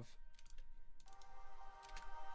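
Computer keyboard and mouse clicks, a few sharp taps in the first second. About a second in, a faint sustained chord of several held notes starts playing from the track in the music software.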